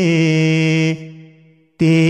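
A male voice singing a ginan, an Ismaili devotional hymn, in a chant-like style. He holds one long steady note that stops about a second in and fades away. After a short silence the next line begins near the end.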